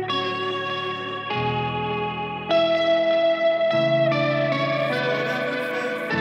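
Live worship band playing an instrumental passage: electric guitar through effects over sustained chords that change about every second and a quarter.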